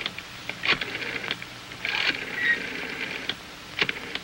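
A few sharp separate clicks and a short rattle from an old desk telephone being handled and dialled.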